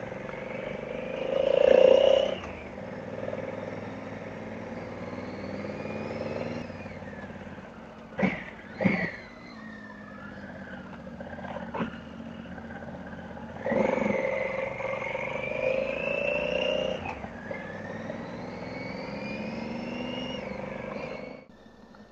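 Motorcycle engine pulling up a steep, winding hill, its pitch rising as it accelerates about two seconds in and again around fourteen seconds in, with a few short, sharp sounds near the middle.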